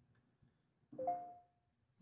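A brief electronic chime about a second in, a few notes sounding together and fading within about half a second. It comes from the iPad as the email with the exported CSV file finishes sending.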